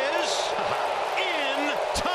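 Baseball broadcast audio: an announcer's voice over steady background noise.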